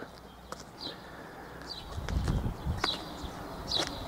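Short, high bird chirps about once a second over faint street background, with a low rumble in the second half.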